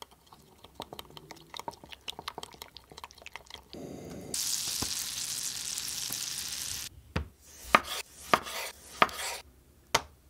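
Metal spoon stirring a thick sauce in a glass bowl, with quick small clinks and scrapes. From about four seconds in comes a steady sizzle of bread slices toasting in a frying pan. It gives way to a few sharp knocks among bursts of sizzling, and there is one tap at the very end.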